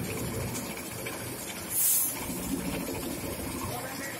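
Stone flour mill (atta chakki) running while grinding grain, a steady mechanical hum. There is a short hiss about two seconds in.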